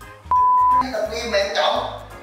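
A steady high censor bleep, about half a second long, covering a swear word, over background music with a steady beat and a man's voice.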